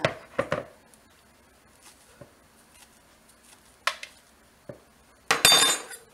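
Kitchen utensils handled on a cutting board: a metal spoon and a plastic mixing bowl give a few scattered knocks and clinks, then a loud clatter with a ringing metallic clink about five seconds in as the spoon is put down on the wooden counter.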